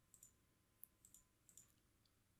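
Near silence with a few faint, scattered computer mouse clicks.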